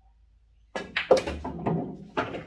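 A pool shot. The cue strikes the cue ball and the cue ball hits the object ball, which drops into the corner pocket on a straight-in draw shot. This is a sudden quick run of sharp clacks and knocks starting about three quarters of a second in, the loudest just after one second, with clattering after it.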